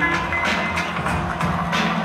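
Live hip-hop instrumental beat playing loud through a club PA: deep bass under a steady drum beat, with strikes about every half second and no rapping over it.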